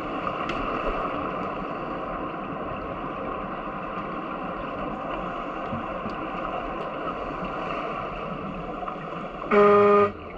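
Steady underwater hiss of a swimming pool picked up by a submerged camera, with a few faint clicks. Near the end comes a loud, half-second buzzing tone: the underwater signal horn of an underwater rugby match.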